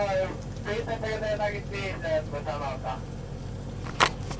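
A man's voice, drawn-out and hesitant, for about the first two seconds over a steady low hum, then a sharp click at the end.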